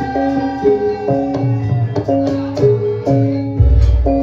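Javanese gamelan music accompanying a Lengger dance: pitched metal percussion plays a steady repeating note pattern over a drum, with a deep low stroke near the end.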